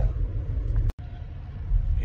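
Steady low rumble of a moving car heard from inside the cabin, cutting out for an instant about halfway through.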